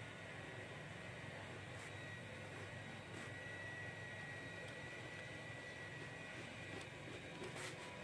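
Quiet room tone: a faint steady hiss with a thin high whine, and a couple of faint clicks near the end.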